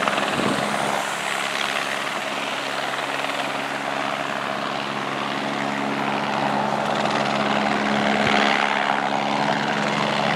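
Police helicopter hovering overhead with a steady low hum, over the noise of cars driving past on the road.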